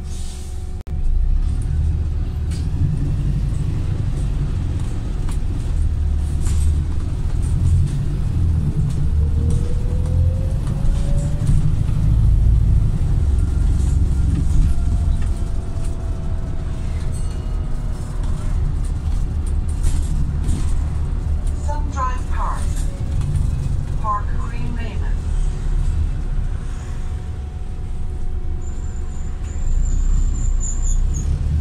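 Volvo B5TL double-decker bus's four-cylinder diesel engine and drivetrain heard from inside the saloon while the bus drives along, a steady low rumble, with a short rising whine about nine seconds in as it picks up speed.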